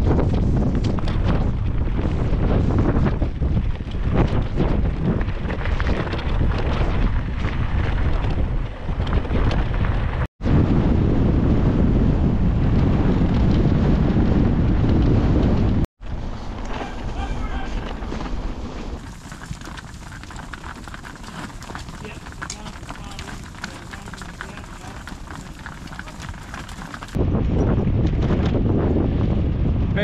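Wind buffeting the microphone of a camera on a moving bicycle: loud wind noise that breaks off at edits, drops to a quieter hiss from about halfway through, and turns loud again near the end.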